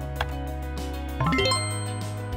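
Background music with a quick rising run of chiming notes about a second in, ending on a ringing ding: a quiz answer-reveal sound effect as time runs out.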